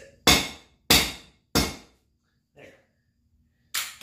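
Three sharp hammer blows, about half a second apart, smashing a broken remote clicker on a concrete floor.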